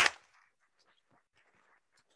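Applause from a small audience, heard only very faintly as scattered, irregular claps, after a short sharp sound right at the start.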